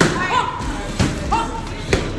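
Three dull thumps about a second apart from a boxing drill, gloved hands and swung foam pool noodles meeting.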